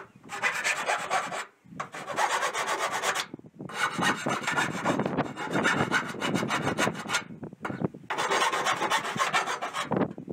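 Hand file rasping back and forth on the cut edge of a square hole in a steel shipping-container roof, deburring the sheet metal so the edge is not sharp. The scraping comes in long runs of strokes, broken by brief pauses about one and a half, three and a half and seven and a half seconds in.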